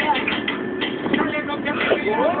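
Indistinct voices and commotion inside a bus, over the steady running noise of the bus.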